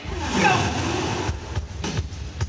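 A shouted 'Go!' through a stage PA, with a low rumble from the venue speakers starting abruptly at the same moment and a few thumps about a second and a half in.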